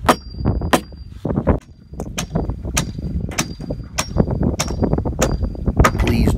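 Steel hammer driving a large shank nail (pole barn spike) into a wooden fence rail and post: about nine sharp metallic blows, each with a short high ring, two quick ones, a pause, then a steady run of roughly one blow every 0.6 seconds.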